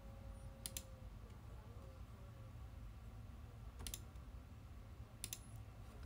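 Three faint computer mouse clicks, one about a second in, one near four seconds and one just past five, over a low steady hum: the mouse clicking through the tabs of a software dialog.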